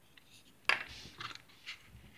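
Plastic scale-model parts being handled: a sharp click about two-thirds of a second in, then a few faint taps and rustles.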